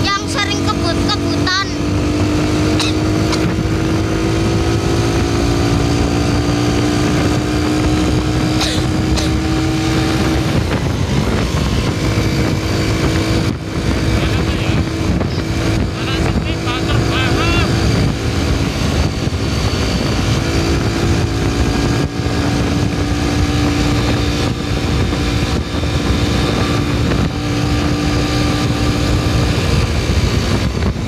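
A vehicle engine running under way with road and wind noise. Its pitch climbs slowly for about ten seconds, drops about eleven seconds in, then holds steady. Short warbling high tones sound at the very start and again about sixteen seconds in.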